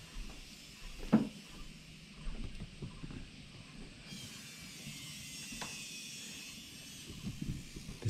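Outdoor ambience: a steady high hiss with scattered faint knocks and one sharp click about a second in; the hiss grows denser about four seconds in.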